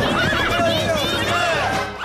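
A cartoon crowd of many voices cheering and whooping at once, over a low steady rumble; it drops away near the end.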